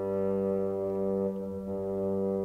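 Orchestral accompaniment holding one steady, unwavering low note, with no singing.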